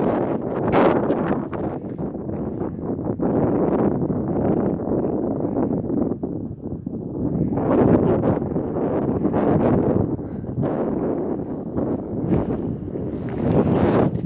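Wind buffeting the phone's microphone, a loud rumbling rush that swells and eases in gusts every few seconds.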